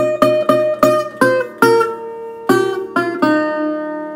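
Steel-bodied resonator guitar in open D tuning, picked in a quick run of about nine single melody notes, the last one left to ring.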